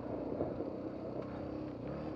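Suzuki DR-Z250's single-cylinder four-stroke engine running steadily on the trail, kept fairly quiet by its silencer and spark arrestor.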